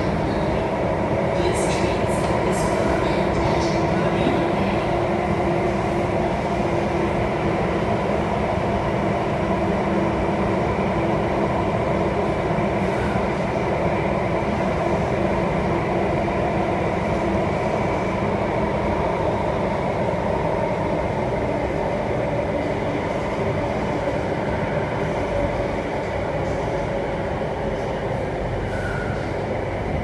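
Alstom Metropolis C830C metro train running through a tunnel, heard from inside the car: a steady rumble of wheels and running gear with a steady hum of several held tones from the traction equipment. A few sharp clicks in the first few seconds.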